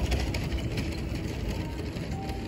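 Background music with a deep, steady bass running under it.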